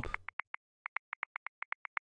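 A rapid run of short, light ticks, about ten a second, broken by a brief pause about half a second in.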